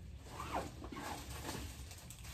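Faint scratchy rustling and scraping from someone rummaging by hand through storage bins and handling packaged items, with a couple of short squeaks about half a second in.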